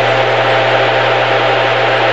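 Steady radio static hiss with a low hum underneath, from a receiver tuned to a NOAA Weather Radio broadcast on 162.550 MHz during dead air between recorded messages.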